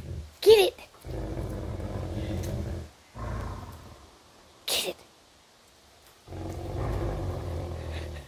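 Dogs growling in play while tugging a toy: three long, low growls, with short high-pitched cries about half a second in and just before the five-second mark.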